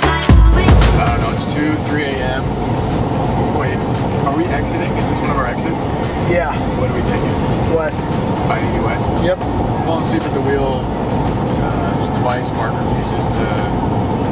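Music with a heavy beat that stops about a second in, giving way to steady road and engine noise inside a moving truck's cabin, with faint voices over it.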